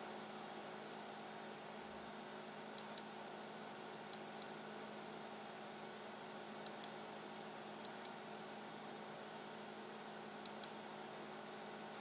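Faint computer mouse button clicks in five quick pairs, the two clicks of each pair a fraction of a second apart, over a faint steady hum.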